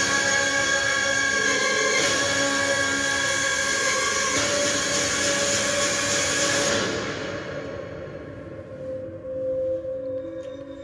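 Film trailer soundtrack: a loud, dense swell of dramatic music with rumbling sound effects, held as a stack of steady tones, that fades away about seven seconds in, leaving a quieter held tone.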